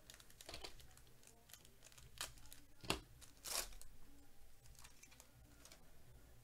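Foil wrapper of a trading card pack being torn open and crinkled by hand: a few short crackles, the loudest about three seconds in, followed by a longer crackle.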